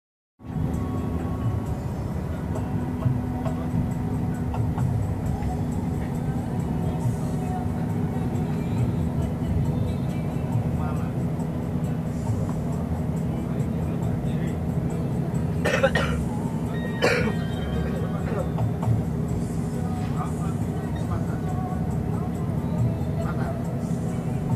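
Steady low rumble of a moving road vehicle heard from inside the cabin. A person clears their throat twice, about two-thirds of the way in.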